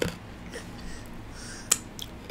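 Close-miked eating sounds from chewing fried chicken and fries: a sharp mouth smack at the start and a louder one about three-quarters of the way through.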